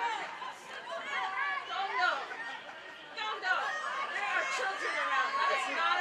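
Many high-pitched voices calling and shouting over one another, with no single clear word. They ease off briefly about halfway through, then pick up again, busier.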